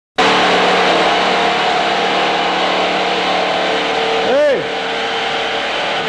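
A loud, steady whirring noise from a running motor or machine, holding level throughout, with a short rising-and-falling vocal sound about four seconds in.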